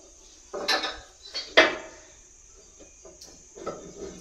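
A handful of sharp clinks and knocks, four of them in the first two seconds and fainter ones near the end, each with a short ringing tail, over a steady high whine.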